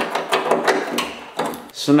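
A sharp click, then a string of small clicks and rustles as a wiring harness and its plastic connector are pulled through a hole in a Jeep Wrangler JK's tailgate panel.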